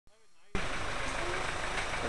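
Motorcycle engine idling under a steady rush of noise, cutting in abruptly about half a second in.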